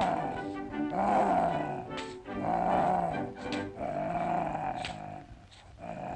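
A cartoon lion's roars, four drawn-out calls each rising and falling in pitch, over background music.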